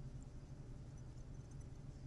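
Faint room tone with a steady low hum and no distinct sound.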